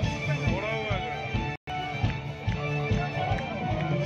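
Live rock band playing through a PA: a steady drum beat with bass and electric guitar, and a voice rising and falling over it near the start. The sound cuts out completely for a split second about one and a half seconds in.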